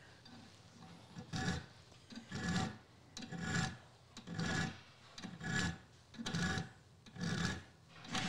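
Auger bit file stroking across the cutting lip of a steel auger bit clamped in a vise, sharpening it: about eight short rasping strokes, roughly one a second.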